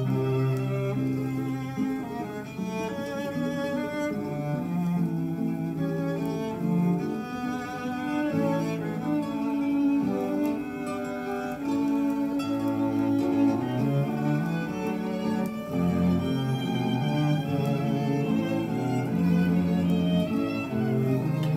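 Bowed string music, led by cello with violin, playing held notes that change every second or two, from a vinyl record on a turntable.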